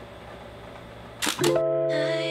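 A camera shutter clicking twice in quick succession about a second in, followed by soft music with sustained chords starting just after.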